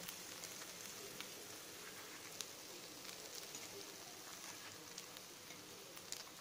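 Oil sizzling faintly around kuzhi paniyaram frying in the wells of a paniyaram pan, with a few faint clicks.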